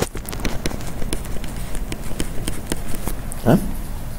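Tablet stylus tapping and scratching on the screen during handwriting: an irregular run of sharp clicks, a few a second. A short, rising voiced sound comes about three and a half seconds in.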